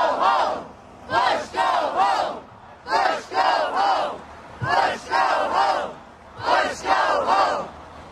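A crowd of protesters chanting a slogan in unison, the phrase repeated about five times in regular bursts of many voices.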